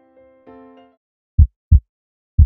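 Soft electric-piano notes that stop about a second in, then a heartbeat sound effect: one lub-dub pair of loud, deep thuds near the end.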